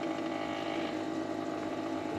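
Keurig coffee maker running as it warms up its water: a steady hum.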